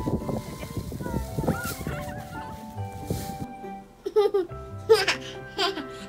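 Dry fallen leaves rustling and crunching as a toddler rummages through them, under background music. About four seconds in this gives way to a toddler's bursts of laughter.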